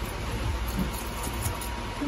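Steady background rumble and hiss with faint distant voices.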